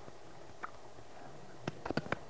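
Quiet room tone with a few faint, short clicks, most of them near the end.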